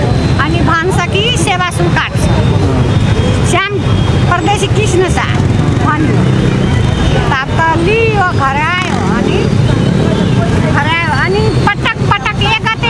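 A woman talking continuously over a steady low rumble of street traffic.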